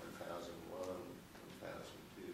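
Faint speech in a room, the words not made out.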